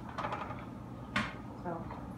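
A single short, sharp clack about a second in, typical of a plastic spatula knocking against a frying pan, amid faint voices.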